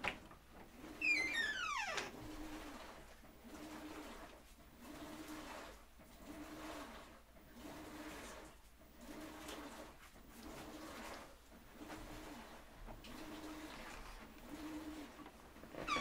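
Titan TN-1541S industrial sewing machine stitching slowly in short pedal bursts, about ten in a row, each a brief steady low hum. A falling whine about a second in is the loudest sound.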